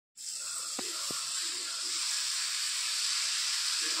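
Dosa batter sizzling on a hot iron tawa as it is spread round with a ladle: a steady hiss. Two short knocks come just under a second in, like the ladle touching the pan.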